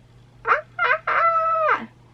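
A woman's high-pitched nonverbal squeal, nervous as she paints tint onto her eyebrow: two short squeaks, then a longer held one that drops in pitch at the end.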